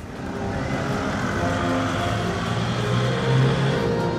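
Road traffic with a vehicle engine passing, growing louder over about the first second, under background music.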